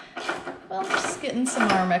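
Metal clinks and scrapes of a hex key turning a screw in the slots of a metal grille insert. A voice talks over it in the second half.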